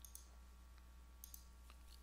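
Near silence: room tone with a steady low hum and a few faint computer mouse clicks, two of them close together a little past the middle.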